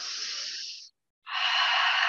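A person breathing deeply and audibly: a quieter breath in, then about a second later a longer, louder breath out.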